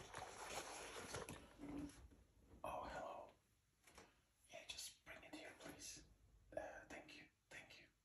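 Hands brushing and tapping the hard shell of an Astroplast first aid case for the first couple of seconds, followed by soft ASMR whispering in short phrases.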